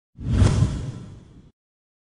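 Deep whoosh sound effect of a logo reveal. It swells quickly and fades away over about a second.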